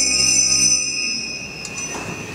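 A cluster of small altar bells struck, their high metallic tones ringing on and slowly fading in a reverberant church. The last sung note of the choir dies away in the first second.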